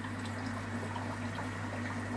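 Steady low hum and water-flow noise from running aquarium equipment, with no separate events.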